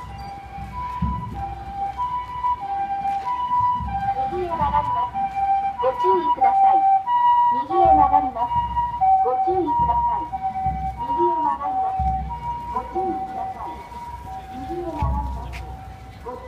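Japanese ambulance's two-tone siren, alternating evenly between a high and a low note, each held a little over half a second. It grows loudest about halfway through as the ambulance passes close, then fades toward the end.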